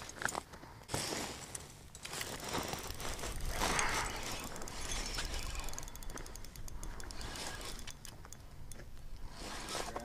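Spinning reel cranked on an ice rod while a hooked fish is fought, its gears ticking rapidly and steadily.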